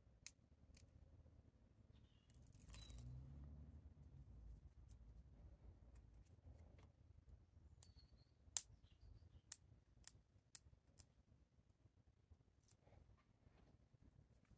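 Near silence with faint, scattered clicks and rustles of fingernails picking at and peeling the backing liner off double-sided foam tape on a paper cut-out: a soft rustle about three seconds in and a sharper click a little past halfway.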